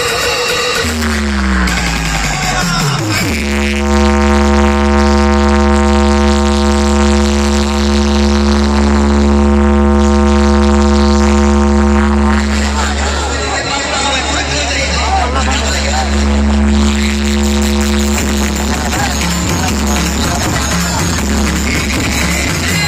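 Large street DJ sound system playing electronic music very loud. A falling pitch sweep runs over the first few seconds, then one long held synth note sits over a steady deep bass for about ten seconds. The held note comes back near the end.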